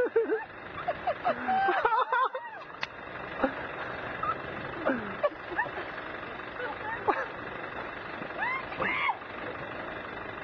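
A steady rush of churning river water and engine noise as a jeep wades through deep water. People's voices call out over it now and then, loudest about two seconds in.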